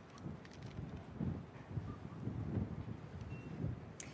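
Faint, irregular low rumbling of wind buffeting a clip-on microphone worn outdoors, coming and going in gusts.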